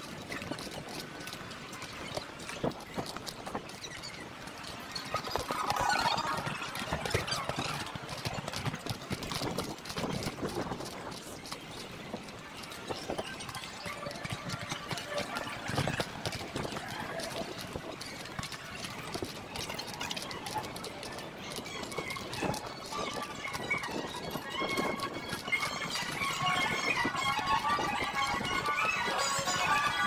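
Footsteps on stone paving and cobbles, a steady run of hard clicks from walking, with music and street sound in the background that grow louder near the end.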